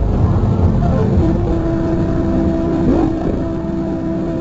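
Logo-jingle audio played pitched down and distorted: a loud, dense rumbling drone with a steady held tone and a brief swooping sound about three seconds in.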